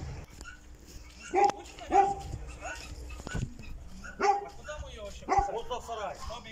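A dog barking, about four short barks spaced out through the moment, the loudest pair close together early on.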